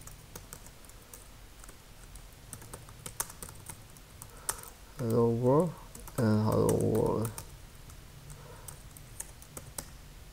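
Typing on a computer keyboard: scattered key clicks throughout. A person's voice sounds twice, briefly, about halfway through, louder than the keys.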